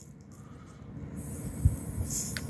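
Low outdoor background rumble with a soft low thump about one and a half seconds in.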